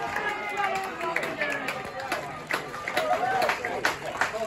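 Voices of players and spectators calling and shouting across an outdoor football pitch, with a few sharp knocks in between, the loudest near the end.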